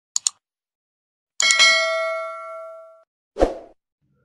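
Subscribe-button animation sound effects: two quick mouse clicks, then a bright notification-bell chime that rings out and fades over about a second and a half, and a short whoosh near the end.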